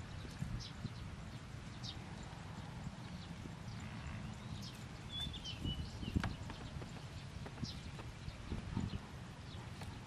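Kitchen knife knocking on a wooden chopping board as cauliflower is cut, in irregular single knocks, the loudest about six seconds in.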